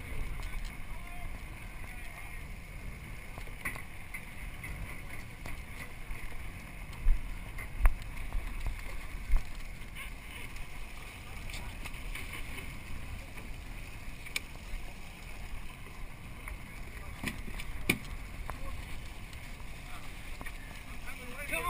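Steady wash of water along a boat's hull with wind on the microphone, broken by a few short low knocks about seven to nine seconds in and once more near the end.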